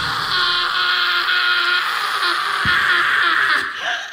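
Live rock concert sound without the full band: sustained, wavering high tones ring over the hall. One dull thump comes a little past halfway, and a falling glide near the end.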